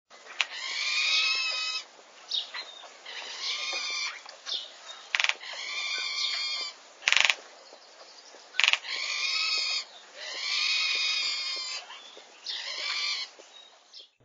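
A bird calling over and over, a string of pitched calls each about one to one and a half seconds long with short pauses between them. Two sharp clicks, louder than the calls, come about a second and a half apart just past the middle.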